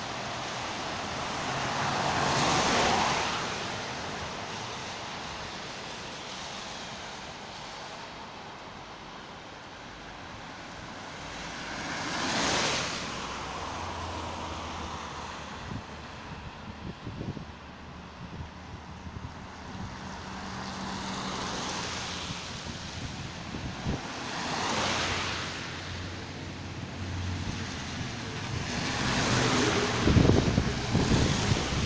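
Cars passing one at a time on a wet road, their tyres hissing on the wet asphalt. Each pass swells and fades: one about two and a half seconds in, one around twelve seconds, one around twenty-five seconds, and a louder one building near the end.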